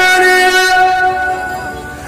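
A man's amplified voice holding one long, high chanted note with a slight waver, tapering off near the end.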